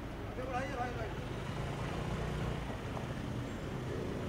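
A car engine running steadily close by, with a brief raised voice about half a second in.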